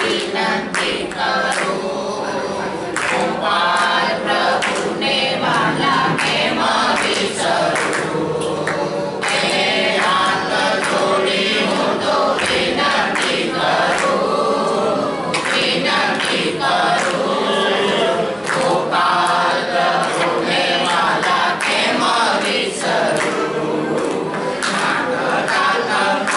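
A group of people singing together, a devotional chant sung in chorus.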